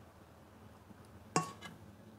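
Cookware clinking against a glass baking dish while sticky rice is scraped out of a pan. There is one sharp clink with a brief ring about two-thirds of the way in, followed by a couple of fainter taps.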